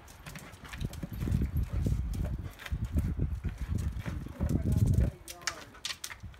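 A rubber basketball pushed and knocked around brick paving by a dog, with irregular dull thumps and scuffs of the ball and paws on the bricks.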